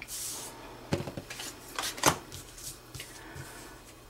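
Tarot cards being drawn and laid down on a cloth-covered table: a brief swish of a card sliding at the start, then several light card taps and clicks about a second apart.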